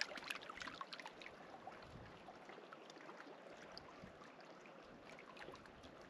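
Small waves lapping and splashing against rocks at the edge of an alpine lake, faint and steady, with a cluster of louder splashes in the first second.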